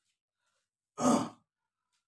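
A man's short sigh, about a second in.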